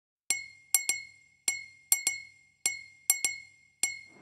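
Bright clinking percussion hits with a short ringing high tone, about ten strikes in a repeating pattern of one hit and then two quick hits. This is the sparse opening of a dance song's track.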